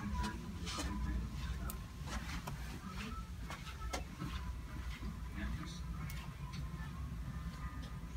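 Footsteps of a person walking slowly down a carpeted hallway: soft, irregular clicks, one or two a second, over a low steady room hum.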